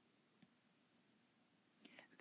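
Near silence: room tone, with one faint click a little before halfway.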